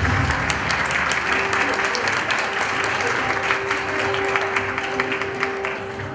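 Audience applauding, dense clapping as the low end of music drops away in the first moment. A single steady held tone sounds through it from about a second in, and the clapping thins out toward the end.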